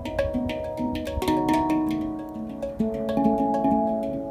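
Two steel handpans played together by hand: many quick finger strikes on the tone fields, each note ringing on so that several pitched notes overlap at once.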